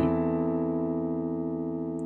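Digital keyboard holding a C6 chord with E in the bass (notes E, C, E, A), struck just before and left to ring, slowly fading.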